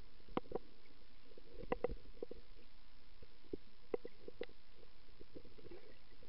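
Underwater sound heard through a camera held below the surface: a muffled, steady rush with scattered sharp clicks and pops, most of them in the first two seconds.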